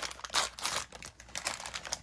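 Doll packaging crinkling and rustling as it is handled, in a few short bursts, the strongest about a third of a second in.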